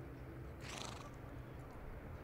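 A racehorse gives one short, breathy snort through its nostrils about half a second in, blowing after its race. Under it is a faint, steady low hum.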